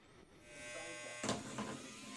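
A small battery-powered gadget buzzing steadily as it vibrates on a hard tabletop, starting about a third of a second in, with a brief knock just past a second in.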